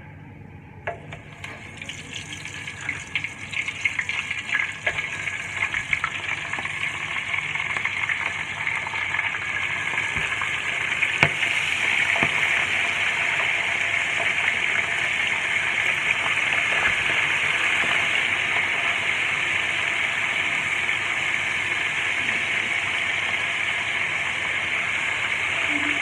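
Flour-and-egg-coated crab deep-frying in a pot of hot oil. The sizzle starts about a second in as the crab goes into the oil, crackles and builds over the next several seconds, then settles into a steady hiss.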